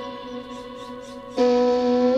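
A synthesized voice line plays held pitched notes, with a new note entering about one and a half seconds in. It runs through Ableton's Erosion effect in sine mode, with the frequency automated to sweep upward, and an Auto Filter low-pass that is closing.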